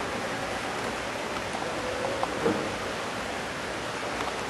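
Steady background hiss with no clear event, and a couple of faint short sounds about halfway through.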